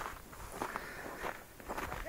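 Footsteps in snow: a few irregular, soft steps.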